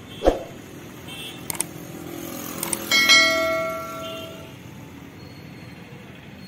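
A short thump, a couple of clicks, then a bright bell chime about halfway through that rings out and fades over a second or so: the click-and-bell sound effect of a YouTube subscribe-button animation. Faint street traffic runs underneath.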